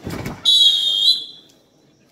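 Referee's whistle: one shrill blast, a bit under a second long, rising slightly at its end, stopping the wrestling bout.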